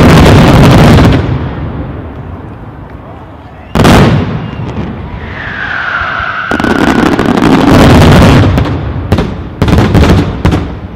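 Fireworks finale: a dense, continuous barrage of aerial shell bursts stops about a second in and its rumble dies away. A single loud bang comes near four seconds, followed by a whistle and crowd voices, then a few more sharp bangs near the end.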